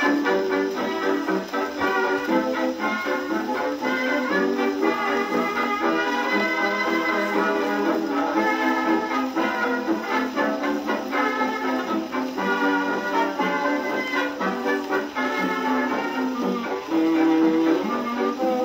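A 1927 78 rpm shellac record of a brass-led jazz dance band, played back on an acoustic phonograph through its soundbox and gooseneck tone arm. It is purely instrumental and sounds thin, with almost no bass.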